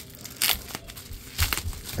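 Plastic bubble wrap crinkling as hands pull it open, with a few sharp crackles about half a second and a second and a half in.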